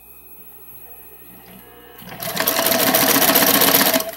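AlphaSew PW200-ZZ walking-foot zigzag lockstitch sewing machine starting about halfway in and running at speed through fabric, a fast even mechanical patter that stops right at the end.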